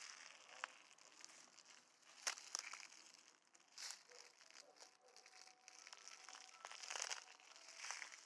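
Faint, irregular crunching and rustling of footsteps through dry grass and twigs, with a louder cluster of crackles near the end.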